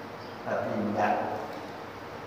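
A man's voice through a microphone and PA: two short vocal sounds, about half a second and a second in.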